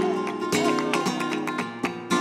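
Flamenco guitar playing a bulería accompaniment between sung verses, with palmas (rhythmic handclaps) marking the compás in sharp strokes about every half second.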